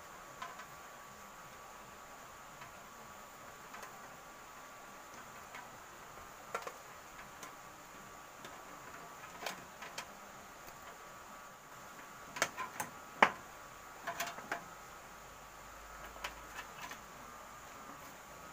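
Scattered light clicks and taps of a ground wire and hand tools being worked into a terminal lug on a metal panel box, with a quick run of sharper knocks about twelve to thirteen seconds in.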